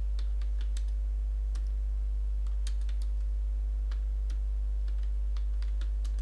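Computer keyboard being typed on: a dozen or so irregular keystroke clicks as a command is entered, over a steady low electrical hum.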